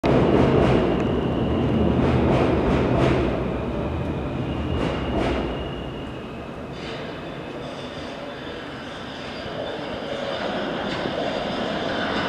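Subway rumble and wheel clatter as an L train of R143 cars approaches through the tunnel. A heavy rumble with sharp clacks over the rail joints comes in the first half and eases off around six seconds in. It then builds again with a thin high whine as the train nears.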